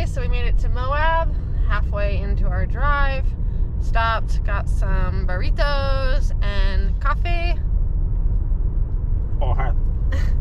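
A woman talking inside a moving car's cabin over a steady low hum of road and engine noise. Her talk pauses about three-quarters of the way through, leaving only the road noise for a couple of seconds.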